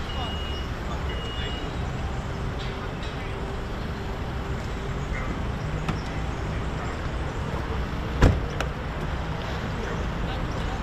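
Steady road-traffic rumble, with a sharp clunk about eight seconds in and a lighter click just after, the door of a parked police car being unlatched and swung open.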